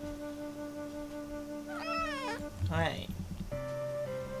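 A domestic cat meows about two seconds in, one call that falls in pitch, followed at once by a second, shorter call. Soft background music with sustained flute-like notes runs underneath.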